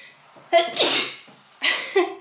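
A woman sneezing after swabbing her nose for a home COVID-19 test, two sharp bursts about a second apart, breaking into laughter.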